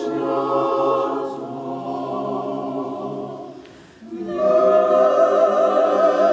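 Russian Orthodox church choir singing a Christmas hymn a cappella in sustained chords. The chord fades away about four seconds in, and a new phrase comes in strongly with a clear vibrato just after.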